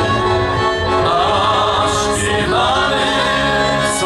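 Live folk band playing: male voices singing over a fiddle and a double bass.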